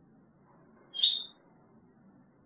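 European goldfinch giving one short, high call about a second in.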